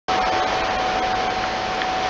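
Steady, loud rushing background noise with a faint constant tone running through it.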